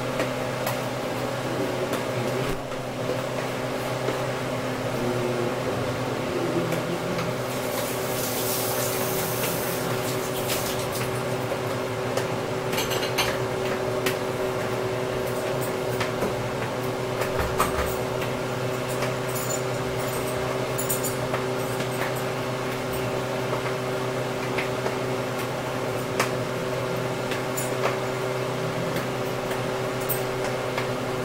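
A steady mechanical hum of several low tones runs throughout. Over it come light clinks, knocks and scrapes of a bowl being emptied into a stainless steel stockpot.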